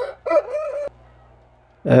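A rooster crows once in the first second, a short rising note and then a held, pitched note that cuts off abruptly, over a quiet, steady low hum. A man's voice starts near the end.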